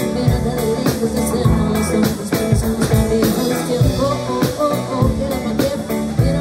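Live rock-pop band playing: drum kit keeping a steady beat, with electric bass and electric guitars.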